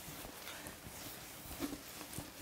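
Whiteboard duster wiping marker off a whiteboard: faint rubbing with a few small ticks.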